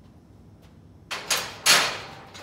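Barbell being set back into the squat rack's hooks: a few hard metallic knocks and scrapes starting about a second in, the loudest near the end.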